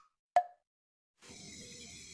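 One last short, hollow wood-block knock, the end of a run of evenly spaced ticks that alternate between a low and a high pitch, sounds about half a second in. After a brief silence, a faint steady room hiss begins past the middle.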